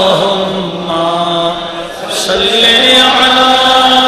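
Men's voices chanting a devotional Islamic hymn without instruments, long held notes sliding slowly up and down in pitch, with a short breath-like dip about halfway through.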